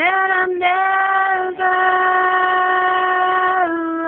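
A female voice singing long held notes with no clear words: the first note slides up into pitch, the voice breaks off briefly twice, then one long note is held and steps down slightly near the end.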